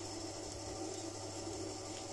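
Faint, steady low hum and hiss of room tone, with no distinct sounds.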